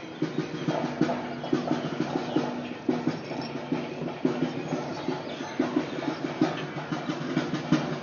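Tabla played in a quick, continuous rhythm, its strokes ringing with a steady pitched tone.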